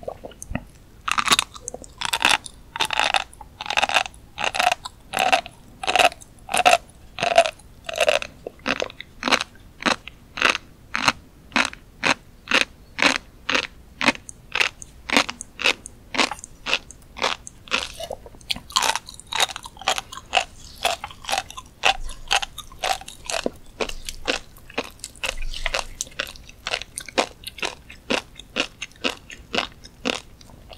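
Close-miked chewing of a mouthful of tobiko (flying fish roe), the tiny eggs crunching between the teeth at a steady pace of about two chews a second. The crunching is busiest in the first several seconds and again about two-thirds of the way through.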